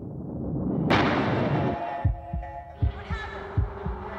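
Dramatic soundtrack sound design: a swelling whoosh breaks into a loud boom about a second in and dies away. Then a heartbeat-like pulse of paired low thumps repeats about every three-quarters of a second under sustained musical tones.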